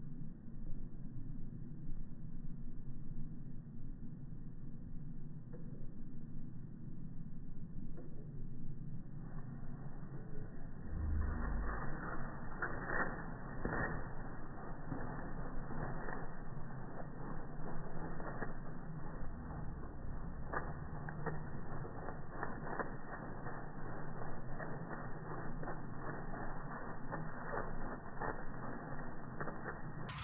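Peacock shaking its fanned tail feathers: a muffled, irregular dry rattle of clicks that starts about ten seconds in and keeps going.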